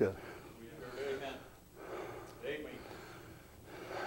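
A pause in loud speech: two short, faint voice sounds, about a second in and again about two and a half seconds in, over quiet room tone.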